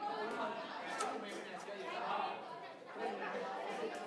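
Indistinct chatter of several voices talking over one another in a large, busy room.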